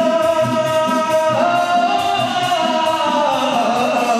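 Amplified live party music: a man singing into a microphone with band backing over a steady beat. A high, held melody line slides down in pitch near the end.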